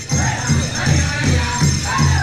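Powwow drum group playing a Grand Entry song: a big drum struck in a steady beat about three times a second under voices singing together, with a high jingling over it.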